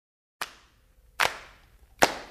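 Sharp hand claps keeping a slow, even beat, each ringing out in reverb: the first about half a second in, the next under a second later, and a third starting just at the end, opening a rock song recording.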